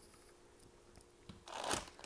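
Faint handling noise: a few soft clicks, then a brief rustle about three quarters of the way in.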